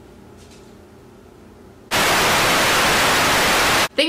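Faint room tone, then about halfway a sudden burst of loud, steady static hiss, like a TV-static transition effect, lasting about two seconds and cutting off abruptly.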